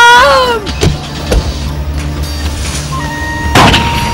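A car engine running steadily as the car drives off, under dramatic music. A woman's high cry trails off just after the start, and a short loud noisy burst comes about three and a half seconds in.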